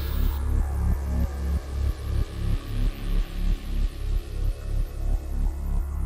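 A metal band opening a heavy song with a low, pulsing bass-heavy riff, about three pulses a second, with little above it.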